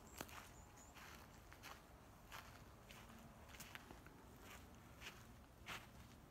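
Faint footsteps on dry grass and bare earth: about ten soft, unhurried steps at an uneven pace, one slightly louder near the end.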